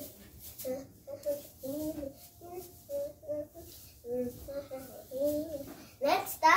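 A young girl singing a tune on her own, in a run of short notes that step up and down, with no backing music.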